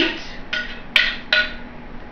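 A few sharp knocks as frozen berries are scraped with a metal utensil from a bowl into a blender jar, three clear ones about a second apart or less.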